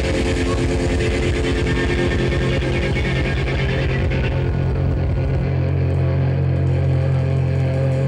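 Live thrash metal band playing loud, with distorted electric guitar, bass and drums. A fast low pulsing stops about five and a half seconds in, leaving a held low chord ringing.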